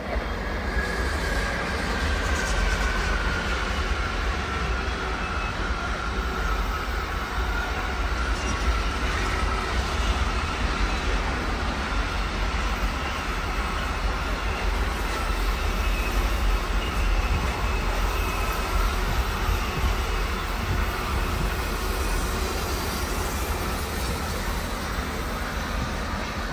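Mixed freight train of container and tank-container wagons rolling past: a steady, continuous rumble of wheels on rail. A faint high squeal runs through it and slowly drops in pitch.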